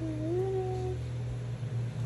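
A person humming a tune: a couple of held notes, the last one sliding up and holding for about half a second before stopping about a second in, over a steady low hum.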